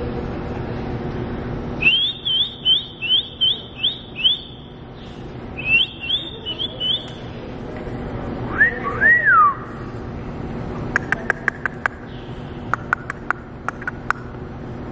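Two quick runs of short, high, rising whistled chirps, each about half a dozen strong. They are followed by a pair of lower, arching whistles and then a fast run of sharp clicks, over a steady low hum of background noise.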